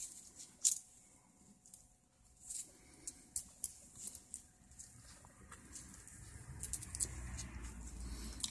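Pennies clicking lightly against each other as they are picked up and stacked by a gloved hand: a scatter of small, sharp ticks, with a faint low rumble building in the second half.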